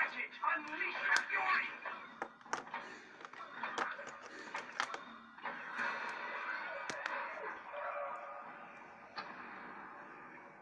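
Indistinct voices in the background, like a television or radio, with a handful of sharp clicks scattered through the middle.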